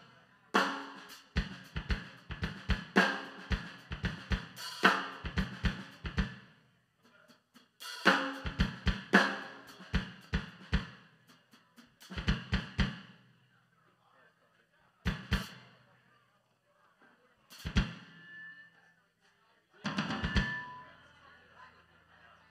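Drum kit played in short bursts of kick, snare and cymbal hits, separated by pauses of a second or two.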